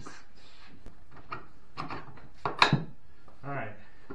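Knocks and scrapes of a long metal rocket motor casing being set down on wooden boards, with a cluster of sharp knocks about two and a half seconds in the loudest.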